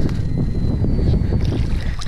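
Wind buffeting the microphone in a loud, unsteady rumble, over water splashing against a kayak's side as a hooked mahi mahi is pulled in alongside.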